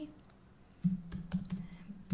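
Typing on a computer keyboard: after a brief quiet, a quick run of keystroke clicks starts about a second in.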